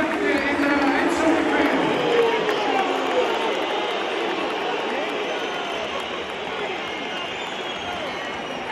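Large football stadium crowd: a dense wash of many voices talking and calling out at once, louder over the first few seconds and then easing off.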